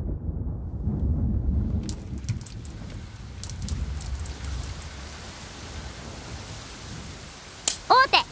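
Thunder rumbling low, with steady rain hissing in from about two seconds in and carrying on as the rumble fades. A single sharp click near the end.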